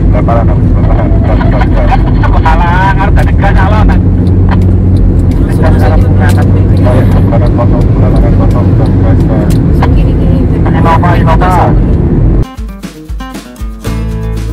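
Loud, steady road and engine rumble inside a moving Honda Freed, with brief snatches of voices twice. About twelve seconds in it cuts off suddenly to acoustic guitar music.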